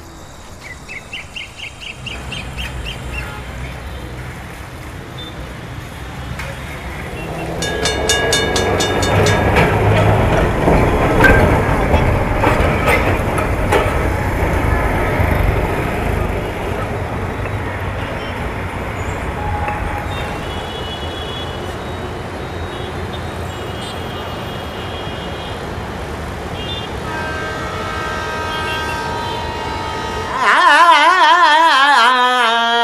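An electric street tram running and rattling over its rails as it passes. It is loudest from about eight to sixteen seconds in, with a quick run of clatters as it builds. After it comes a steadier city street background with short horn toots.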